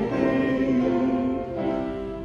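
A hymn sung by a congregation in a church, on long held notes that change to a new note about a second and a half in.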